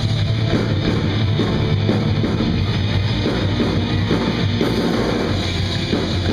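Live rock band playing: electric guitars, bass and drum kit together in a loud, steady full-band passage, heavy in the low end.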